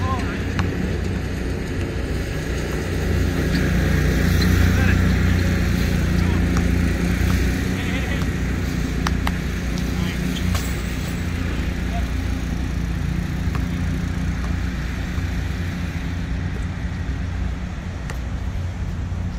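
Steady low rumble of traffic noise under a pickup basketball game, with scattered short knocks of the basketball bouncing on the court and faint players' voices.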